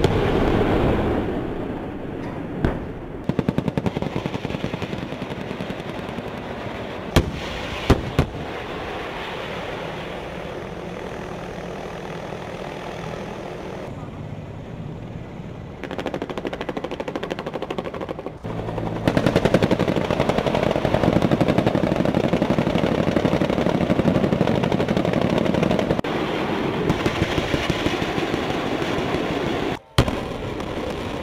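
Battlefield gunfire and explosions: a loud bang at the start, a quick burst of automatic fire a few seconds in, two sharp shots around seven and eight seconds, then a dense, continuous din of rapid fire and blasts through the second half.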